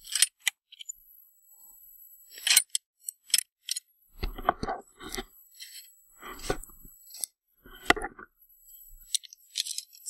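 Footsteps crunching on hard-packed snow: a few uneven steps, with small clicks and knocks between them.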